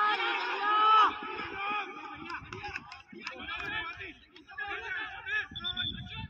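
Players and onlookers shouting and calling out across an open field, several voices overlapping, with the loudest high call about a second in.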